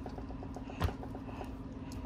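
A single short knock about a second in as the removed Hellcat supercharger is handled and turned on the workbench, over a quiet steady low hum.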